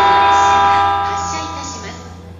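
E257 series train's horn sounding as it pulls into the platform: a loud chord of several tones that holds for about a second and then fades away.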